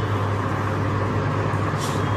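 Steady background hum and hiss of the room, with a brief soft rustle of a silk saree being laid down near the end.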